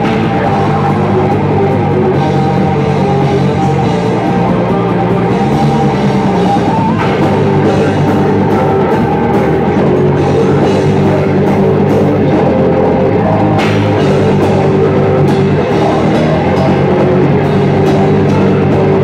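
A metal band playing live at full volume: distorted electric guitars over a pounding drum kit, dense and continuous.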